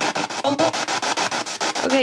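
Spirit box: a portable radio sweeping rapidly through stations and played through a JBL speaker, giving loud, choppy static with broken scraps of broadcast sound.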